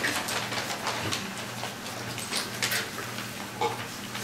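Room noise: scattered rustles and soft clicks of people moving and handling things, at irregular moments, over a steady low hum.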